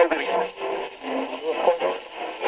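Overlapping speech: several voices talking at once, with no words clear.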